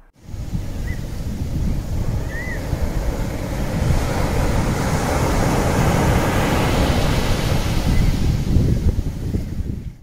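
Ocean surf rushing steadily, swelling toward the middle and fading out at the end.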